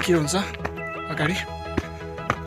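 Background music with held, steady notes, over which a high voice slides down in pitch at the start and swoops up and down again about a second later.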